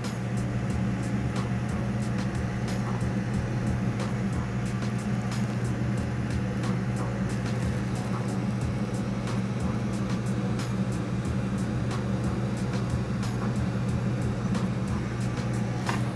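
Background music over the steady rush of a glassblowing bench torch flame as borosilicate tubing is heated. A strong low drone runs throughout, with faint light ticks scattered through it.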